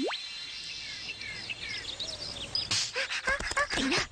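Cartoon sound effects: a quick whistle that swoops down and back up, then a run of short bird chirps repeating for about two seconds. Near the end a noisy burst leads into busy clattering effects and music.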